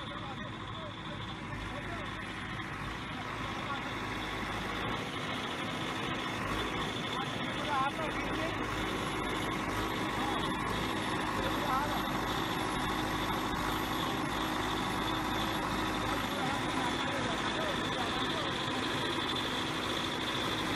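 Engine of heavy land-leveling machinery running steadily with a low rumble, growing a little louder over the first few seconds.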